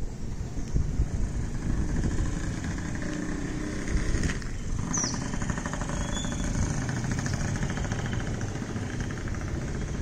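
Outdoor ambience dominated by a low rumbling noise, with a small motorcycle engine buzzing by from about the middle and fading after a few seconds. A short bird chirp sounds about five seconds in.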